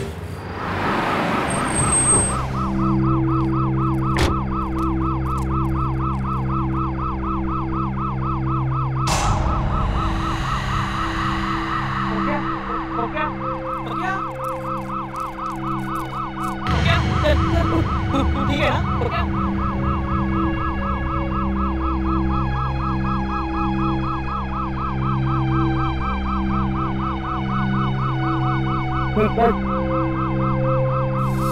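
Police siren warbling quickly and continuously, over a steady low drone.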